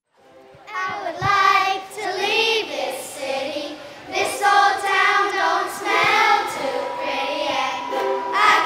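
A large group of children singing together in unison, coming in about a second in after a moment of silence, with ukuleles accompanying.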